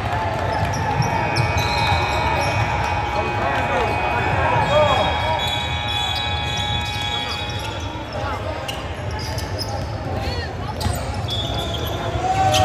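Basketball game sounds on a hardwood gym court: a ball bouncing, sneakers squeaking, and crowd voices chattering. A steady high tone runs through the first half and stops around the middle.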